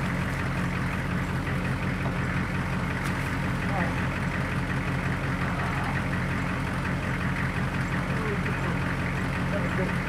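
Military HMMWV's V8 diesel engine idling steadily, a low even drone.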